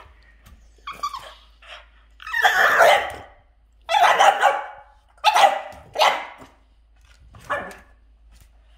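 French bulldog barking in play, about six short barks with pauses between, the longest and loudest in the middle.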